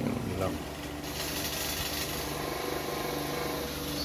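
Electric stand fan running: a steady whoosh of air with a low motor hum, a little stronger after about a second.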